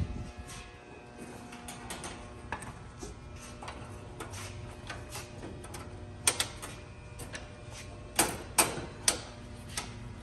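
Sheet-metal electrical panel door being handled and opened: scattered small clicks, then several sharp metal clicks about six seconds in and between eight and nine seconds, over the steady hum of the energized power distribution unit.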